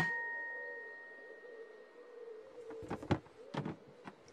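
A single bright chime struck once, its clear tone ringing on and fading away over about two seconds. It is followed by a few soft knocks near the end.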